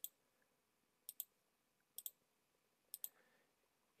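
Faint clicks of a computer mouse button, in four quick pairs about a second apart.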